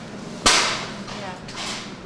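A single sharp bang about half a second in, ringing on in a large empty room, followed by a fainter knock near the end.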